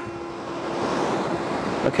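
Ocean surf breaking and washing onto a beach: a steady rushing that swells about halfway through.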